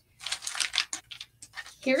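Rustling and light clicking of small craft materials, such as a cardboard tag, handled on a tabletop: a crackly rustle lasting under a second, then a few separate clicks.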